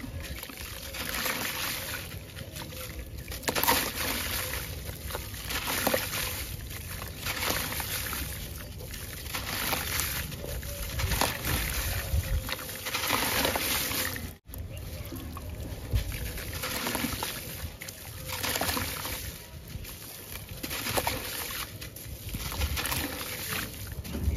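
Hands squeezing and crumbling a wet sand-cement block over a bowl of water: gritty crunching, with wet crumbs and water trickling and splashing into the bowl. It comes in repeated squeezes every second or two, broken by a momentary silence about halfway through.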